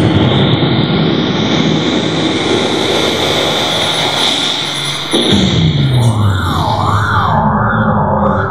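Science-fiction teleport sound effect: a rising whoosh that builds over about three seconds, then a falling wind-down about five seconds in, followed by a warbling alarm rising and falling about once a second, the sign that the transport is failing.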